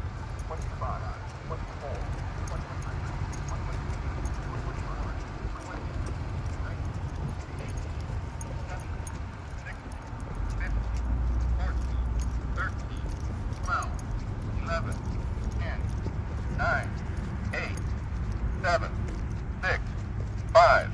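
Polara N4 accessible pedestrian signal speaking its crossing countdown, one number about every second, through a speaker that sounds kind of crappy; faint at first, clearer in the second half. A low rumble runs underneath and swells about halfway through.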